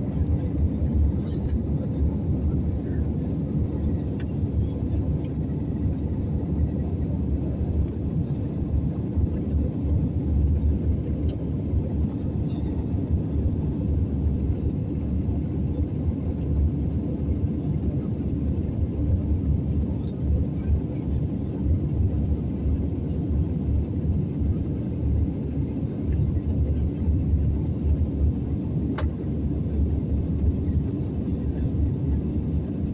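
Jet airliner cabin noise at a window seat over the wing: a steady deep rumble of engines and airflow, with a few faint clicks.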